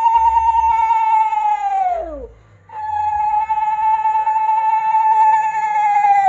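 A woman's voice holding a long, high, wavering note twice, each note sliding down in pitch as it trails off, with a short breath-like gap about two seconds in.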